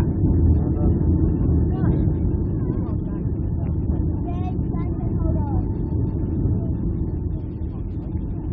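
Steady cabin roar of an airliner on final approach, engine and airflow noise heard from inside the cabin, easing slightly toward the end. Passengers' voices are faint above it.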